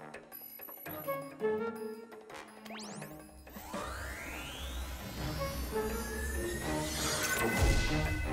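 Cartoon sound effects over background music: short electronic tones, then from about halfway a long rising mechanical whoosh with a low rumble as a floor hatch opens and a car lift rises. It builds to a loud hit near the end.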